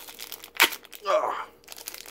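Foil booster-pack wrapper crinkling and tearing as it is opened by hand, with one sharp crack about half a second in.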